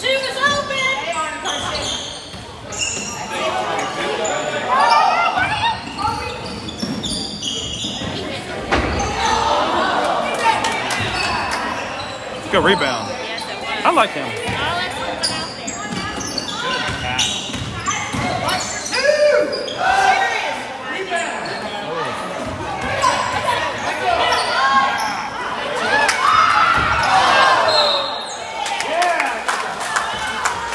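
A basketball game in a gym: a ball bouncing on the hardwood court with scattered sharp impacts, under players and coaches calling out, all echoing in the hall.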